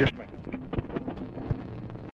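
Faint hiss and crackle of an old telephone-call recording during a pause on the line, with a low steady hum and a few scattered clicks.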